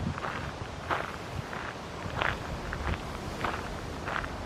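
Footsteps of a person walking at an easy pace on a gravel path, about one step every 0.6 seconds.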